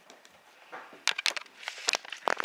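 Handling noise: rustling and a quick run of sharp clicks and knocks, starting a little before halfway and coming faster and louder near the end.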